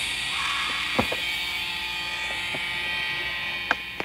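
Skateboard wheels rolling over asphalt with a steady whir. A couple of light knocks about a second in, then the sharp pop of the tail striking the ground near the end as the skater pops a trick.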